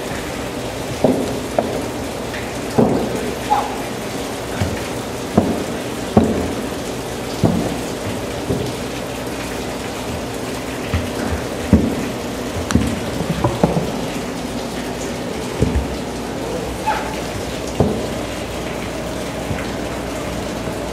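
Mini-golf putter tapping a golf ball again and again in quick, irregular strokes, with sharp knocks over a steady rushing noise.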